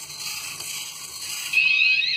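Small hobby servos in a 3D-printed Otto biped walking robot whirring with a light gear rattle as it steps along. About a second and a half in, a louder high steady tone with rising chirps above it sets in.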